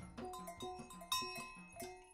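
A wooden xylophone and a drum kit play together in a repeating pattern of short ringing struck notes over a recurring low note, with sharp cymbal and stick hits on top. The music dips into a brief pause at the very end.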